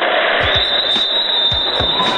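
Background music over the noise of a handball game in a sports hall, with the ball thudding on the court a few times.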